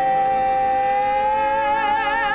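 Male voices holding one long, steady sung note, with a vibrato coming in near the end.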